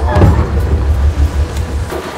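Idling boat engine: a low, evenly pulsing rumble that stops abruptly near the end.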